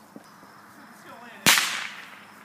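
A consumer firework going off with one sharp, loud bang about one and a half seconds in, fading out over about half a second.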